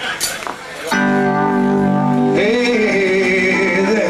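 Live rock band starting a song: after a quieter, scrappy moment, held chords come in about a second in, and a wavering melodic line joins a little past the middle.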